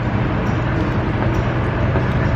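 Steady street traffic noise with a low, even engine hum.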